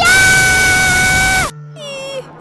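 A voice screaming "Ahhh!" loudly at one steady high pitch for about a second and a half, then cutting off suddenly.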